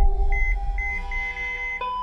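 A string of short, high electronic beeps at uneven intervals over a deep, steady rumble and low held tones. Near the end a steady tone begins.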